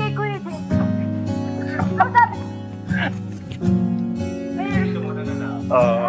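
Acoustic guitar playing held chords, with short bits of voice over it; a voice starts singing near the end.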